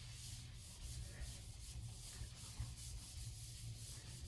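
Whiteboard eraser rubbing across a whiteboard, wiping off marker writing in repeated strokes.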